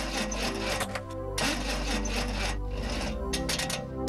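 A car engine's starter cranking it over in rasping strokes without catching, in about three stretches: the engine won't start on a weak battery.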